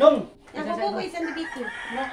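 A rooster crowing, with people's voices around it.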